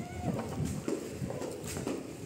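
Footsteps clip-clopping on a concrete floor, a few short knocks a second.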